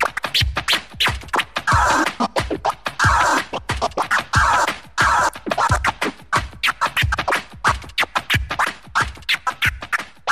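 DJ scratching on a Pioneer CDJ jog wheel over a hip-hop beat: quick back-and-forth scratch strokes chopping a sample, with a steady kick drum underneath.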